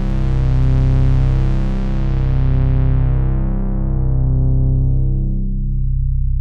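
Korg KingKORG analogue-modelling synthesizer holding one low bass note through its Moog-modelled (MG) low-pass filter. The cutoff is swept slowly down, so the tone grows steadily darker and duller in a very smooth sweep. A slow pulse comes about every two seconds.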